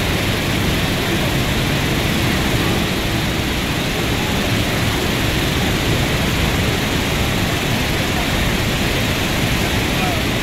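Steady, loud rush of water from Niagara's Horseshoe Falls, heard close to the base of the falls.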